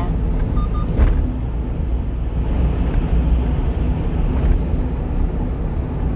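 Steady low rumble of a small 1-ton truck driving at road speed, engine and tyre noise together, with a single short knock about a second in.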